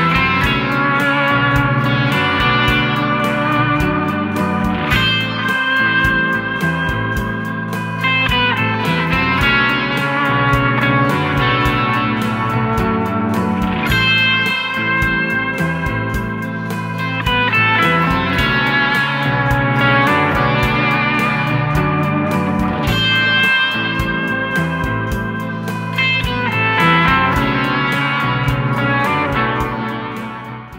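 Electric guitar on a Fender Stratocaster playing improvised pentatonic lead phrases over a looped backing of arpeggiated guitar and bass moving between A minor and B minor, with a steady beat.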